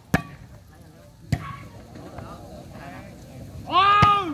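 A volleyball slapped hard by hand on the serve just after the start, then struck again about a second later in the rally, over a murmuring crowd. Near the end a man's voice calls out loudly.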